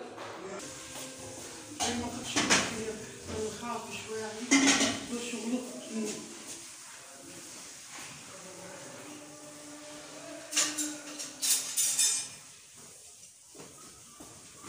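Metal cutlery clinking and scraping against metal dishes: a few sharp clinks in the first seconds, then a quick run of clinks near the end, with people talking in the background.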